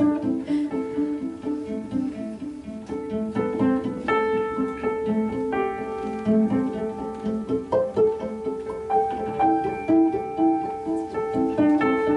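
Cello and upright piano playing a slow instrumental piece together, a repeating figure of short low notes running under longer held notes.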